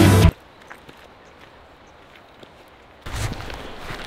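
Rock music cuts off abruptly, leaving a faint hiss with a few soft ticks. About three seconds in, outdoor sound comes in: a low rumble with the footsteps of backpackers on a dirt trail.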